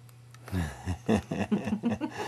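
A person laughing in short bursts, starting about half a second in, over a steady low electrical hum.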